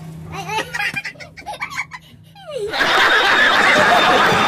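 Voices and laughter, then a short falling glide, then from about two-thirds of the way in a loud burst of studio audience laughter and clapping from a TV comedy show.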